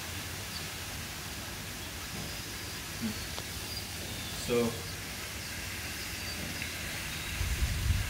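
Steady outdoor background noise with a few faint, short, high chirps scattered through it, and a low rumble rising near the end.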